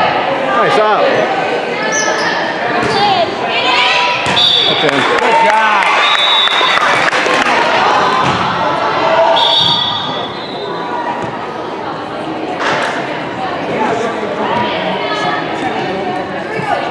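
Echoing gymnasium crowd noise during and after a volleyball rally: players and spectators shouting and cheering, with the thud of the ball being hit. The voices are loudest for the first ten seconds or so, then ease off, with a few sharp ball hits later on.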